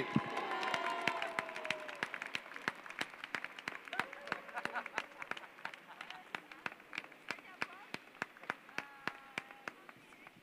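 Audience applauding with scattered individual claps that thin out and fade over the seconds, with faint voices underneath.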